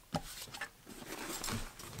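Soft handling noises: a light knock just after the start, then faint rustling as a hand reaches into a fabric tool bag.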